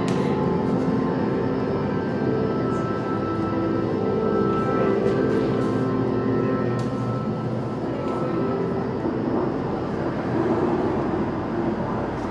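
Steady, layered droning tones over a low hum that go on without a break.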